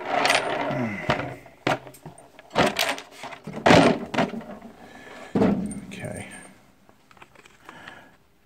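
Small steel screws clinking and rattling as they are handled and picked out by hand: a run of sharp metallic clicks, loudest about four seconds in, dying away near the end.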